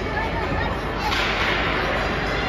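Ice hockey play heard from the stands: a hissing scrape of skate blades on the ice about a second in, over low spectator chatter.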